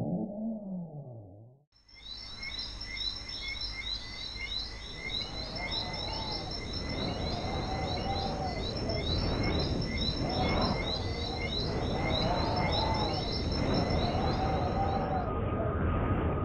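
A passage of music with slow gliding tones fades out, and just under two seconds in a natural ambience begins: many rapid, high bird chirps over a steady rushing background, with a lower arched call repeating about every two seconds.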